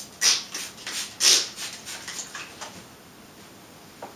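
Trigger spray bottle misting water onto a cotton flat sheet: two loud hissing spritzes about a second apart, followed by softer rustling of the sheet as it is held taut.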